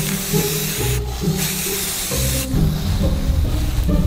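Aerosol spray paint can hissing in two bursts of about a second each as black paint is sprayed onto PVC pipe, over background music.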